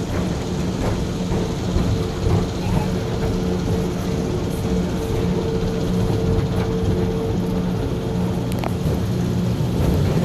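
Space Mountain roller coaster car running along its track: a steady rolling noise with a constant low hum underneath.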